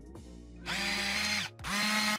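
A whirring, motor-like transition sound effect in two bursts, the first about a second in and the second near the end, over quiet background music.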